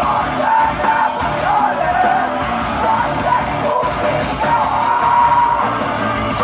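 Folk metal band playing live, heard from the crowd: a woman singing over distorted electric guitars, bass, drums and violin, with a long held melody note about five seconds in.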